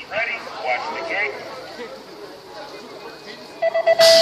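A short voice call, then about half a second before the end the BMX starting gate's electronic start tones: a few quick beeps running into a held tone, the signal on which the gate drops.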